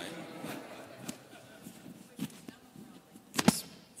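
Rustling and handling noise of a clip-on microphone being fixed back onto clothing, with small clicks and one sharp knock near the end.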